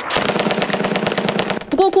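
Automatic rifle fire: a rapid, continuous burst of shots lasting about a second and a half, cut off as a voice begins near the end.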